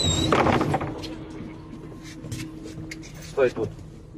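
Inside a MAZ-203 city bus: a loud burst of noise in the first second, then a steady hum over the low running of the bus until about three seconds in, with a short voice near the end.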